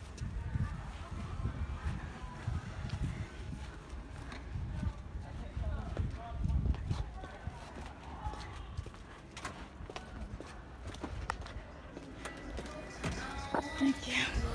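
Wind buffeting a handheld phone's microphone in uneven low rumbles, with footsteps on pavement and a few sharp clicks as the holder walks.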